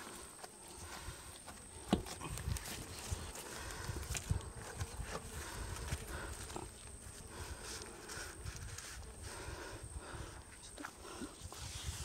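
Faint handling noises as gloved hands work a tape measure along a large Nile perch on a boat deck: scattered soft clicks and knocks, with a sharper click about two seconds in, over a low rumble.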